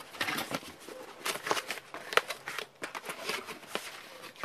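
A cardboard box being opened by hand: its flaps and folded tabs scrape and rustle, with a string of sharp clicks, the loudest about halfway through.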